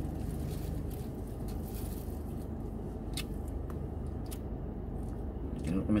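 Steady low rumble inside a car cabin, with a few light clicks of a metal spoon against a food container a little past the middle.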